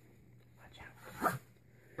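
Mostly quiet room with faint rustling of a cardboard subscription box being handled, and a single spoken word about a second in.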